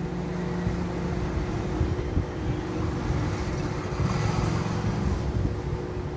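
Steady electric motor hum with a constant pitch and a low, slightly fluctuating rumble underneath.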